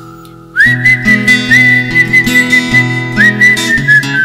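A person whistling the melody, a high note sliding up about half a second in and held, then another upward slide near the end, over strummed acoustic guitar chords.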